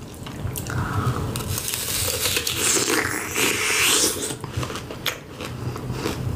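Close-miked crunching and chewing of a candy apple: teeth cracking through its hard red candy shell into the apple beneath, hard enough that it is messing up her teeth.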